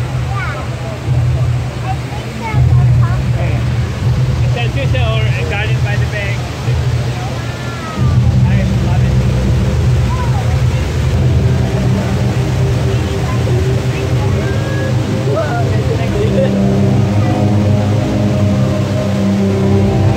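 Chatter of many voices over a steady low rush from a large waterfall. Music with held notes comes in about eleven seconds in and grows louder toward the end.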